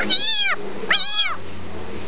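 Amazon parrot mimicking a cat's meow twice, each a short call that rises and then falls in pitch.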